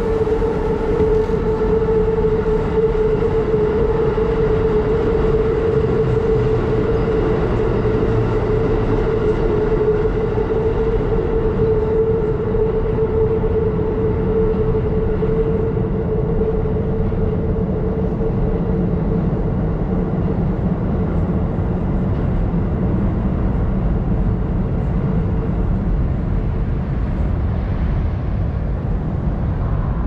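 Steady, loud machine hum from the elevated Keikyu railway, holding one constant mid-pitched tone over a broad rumble. The tone fades a little near the end.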